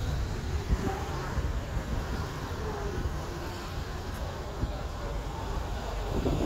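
Steady low rumble of a car driving slowly on a wet city street, heard from inside the cabin, with a brief thump about a second in.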